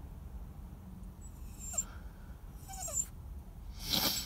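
Small dog whining in a few short, faint high whimpers, with a brief breathy puff of noise near the end: anxious crying at being separated from his person.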